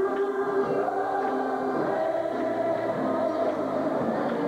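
A church choir or congregation singing a slow gospel song in long held notes, the melody sliding up to a higher held note about a second in.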